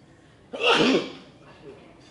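A person sneezing once: a single loud burst about half a second in, lasting about half a second.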